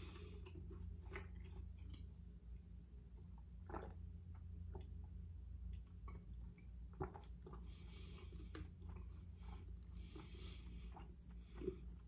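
Faint mouth sounds of drinking from a plastic bottle: soft swallows and small wet clicks, with a couple of soft breaths near the end, over a low steady hum.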